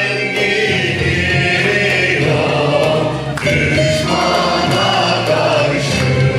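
Turkish folk music choir singing a türkü, accompanied by bağlamas.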